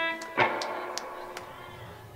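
Electric guitar: a held note, then a chord struck about half a second in that rings on and slowly fades.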